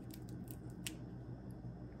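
A few faint, sharp crackling clicks as fingers peel back the scored shell of a roasted chestnut, over a steady low hum.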